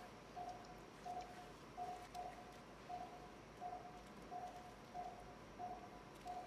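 Faint, steady beep of an operating-room patient monitor's pulse oximeter, one short tone about every 0.7 seconds, each beep marking a heartbeat.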